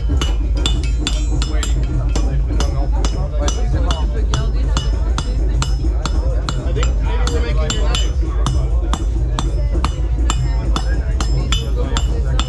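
Blacksmith's hammer striking red-hot metal held in tongs on an anvil: a steady run of sharp, ringing metallic blows, a few a second. Steady low bass music and voices run underneath.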